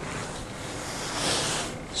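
Wind rushing on the camera microphone, a soft noise that swells about a second in and fades near the end.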